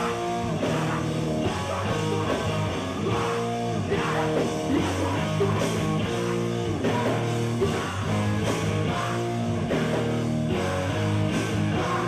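A live hardcore punk band playing: distorted electric guitar chords over a drum kit, cymbals crashing, going on without a break.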